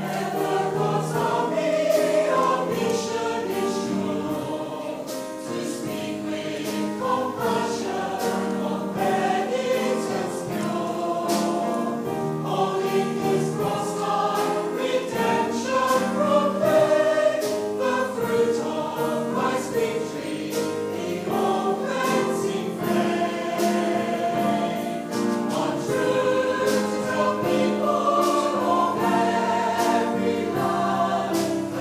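A mixed choir of men's and women's voices singing a hymn, accompanied by piano.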